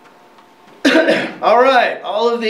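A man clears his throat loudly about a second in and goes straight into speaking.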